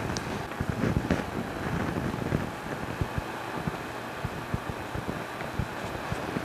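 Quiet kitchen handling sounds: a run of soft taps and rustles as rolled pizza dough is laid into a greased metal cake pan and pressed down into it by hand.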